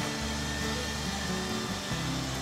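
Small engine of a portable sawmill running steadily, an even motor drone with a low hum.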